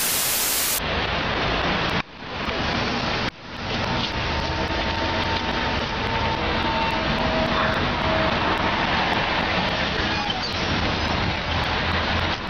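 A short burst of TV-static hiss, then steady noisy street sound at a city bus: traffic rumble and hiss on a camera microphone, with a faint high whine for a few seconds in the middle. The sound drops out briefly twice, about two and three seconds in.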